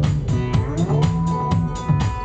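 Live dance-punk band playing, with a steady drum-kit beat, electric bass and guitar. A sliding tone comes in early, then a high note is held from about a second in.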